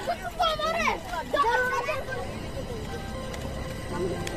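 Children's voices calling and chattering in an outdoor playground, loudest in the first two seconds, then fading to quieter background chatter.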